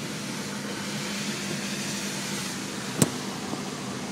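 Steady road and engine noise heard inside a moving car's cabin, with one sharp click about three seconds in.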